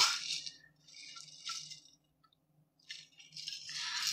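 Faint sipping through the straw of a Stanley tumbler, a short stretch of soft slurping noise about a second in.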